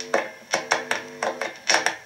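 Squier Bullet Strat's bridge humbucker played clean through an amplifier: a quick run of picked notes and chords, about eight attacks, each ringing briefly. The cheap pickup is a bit noisy, picking up parasitic noise.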